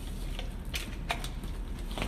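A few light clicks and knocks as a power plug is pushed into a plastic power strip and the cords are handled, over a steady low hum.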